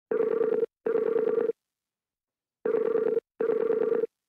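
Telephone ringback tone in the double-ring pattern: a low buzzing tone sounds twice in quick succession, pauses for about a second, then sounds twice again, as a call rings out before it is answered.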